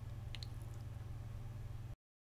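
Faint room tone of the voice recording, a steady low hum with light hiss, with two faint clicks about a third of a second in. It cuts off to silence just before the end.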